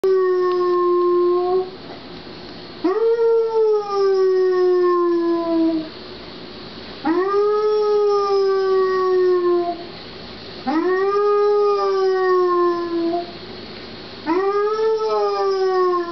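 Basset hound howling: one howl already under way, then four more long howls, each rising sharply at its start and then sliding slowly down in pitch, with short gaps between them. It is howling because its owner has left the house, a sign of separation anxiety.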